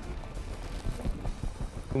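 Fishing reel being cranked fast as a hooked bass is fought to the boat: a quick run of small irregular clicks over a low rumble.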